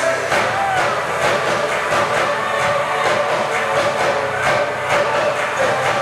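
Live band playing an up-tempo R&B dance track with a steady drum beat, about two beats a second, through a concert hall's sound system.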